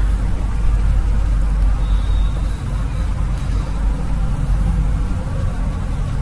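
A steady low rumble with a faint hiss, unbroken by any distinct event.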